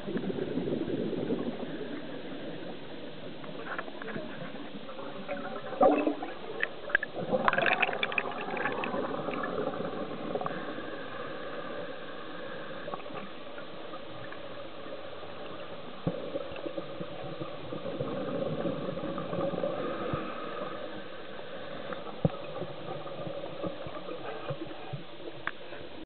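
Scuba regulator exhaust bubbles heard underwater, bubbling and gurgling over a steady underwater hiss, with louder bursts of bubbles around six and eight seconds in.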